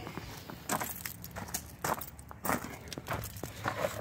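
Footsteps on loose gravel: a string of irregular crunching steps.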